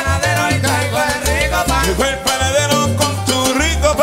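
Live salsa band playing, with congas, timbales and a walking bass line under the melody.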